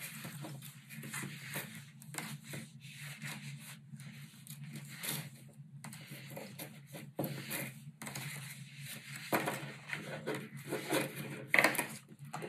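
Wooden knitting needles and chunky yarn rubbing and scraping as stitches are knit: soft, irregular rustles and light taps over a low steady hum.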